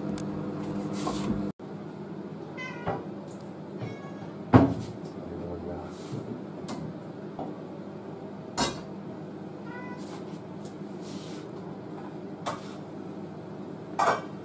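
Kitchen handling sounds at a stove: a glass bowl and dishes being moved, with two sharp knocks about four and a half and eight and a half seconds in, a few short high squeaks, and a steady low hum underneath.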